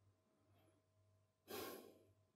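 Near silence with a faint steady hum, broken about one and a half seconds in by one short breathy sigh close to the microphone.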